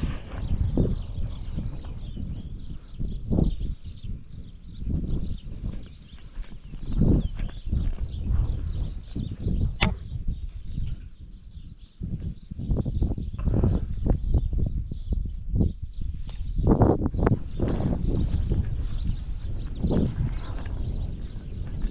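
Wind rumbling on an outdoor camera microphone in uneven gusts, with irregular knocks from the camera being handled and from footsteps on a dirt road.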